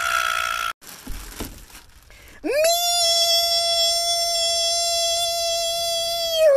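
A man's voice holding one high sung note on 'Me!' for about four seconds, after a short noisy shriek at the start.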